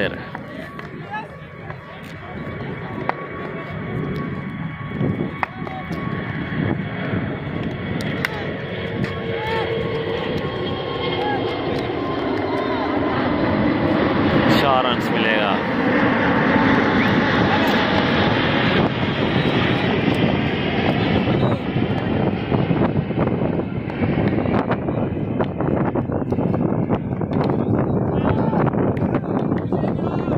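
A loud, steady engine roar with a faint high whine builds over about fifteen seconds and then stays loud. Voices can be heard in the background.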